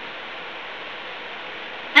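Steady, even hiss of room tone, with no distinct sound in it.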